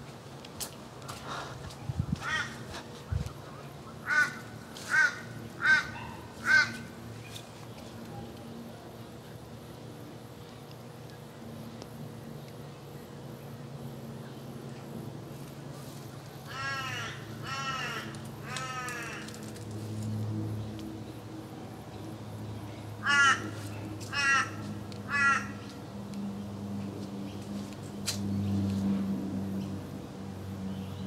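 Crows cawing in short runs: four caws about a second apart a few seconds in, three longer drawn-out calls in the middle, and three more caws later, over a low steady hum.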